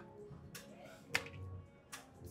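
Playing cards being dealt and flipped on a blackjack table's felt: three sharp, short clicks, about half a second in, just after a second in and just before the end, over faint background music.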